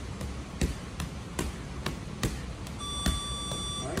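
Boxing-gloved punches landing on a heavy bag, about two to three a second. Near the end, an electronic gym timer beeps steadily for about a second, signalling the end of the round.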